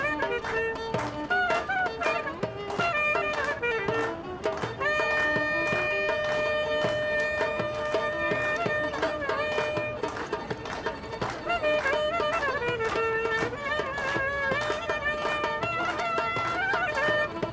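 Turkish folk dance music led by a clarinet playing an ornamented melody, holding one long note for several seconds midway, over a steady percussion beat.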